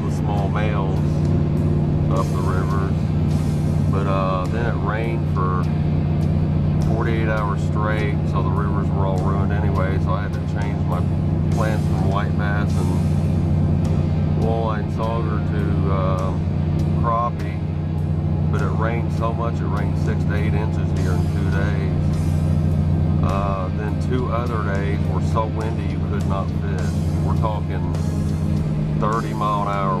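A song with singing and guitar plays over a steady low drone inside a Dodge Durango driving at road speed. The driver puts the drone down to the roof-rack crossbars he snapped, and says it sounds like a World War II bomber.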